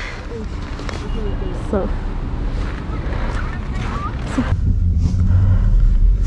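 Outdoor street noise with faint, brief voices, then from about four and a half seconds in a steady low rumble of a car engine heard from inside the car.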